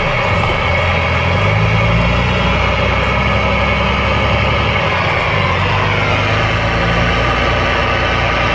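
Truck engine running steadily, heard from inside the cab while the truck rolls slowly along; the engine note drops about six seconds in.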